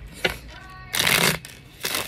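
A deck of tarot cards being riffle-shuffled by hand: a click, then a quick rattling riffle about a second in and a shorter one near the end.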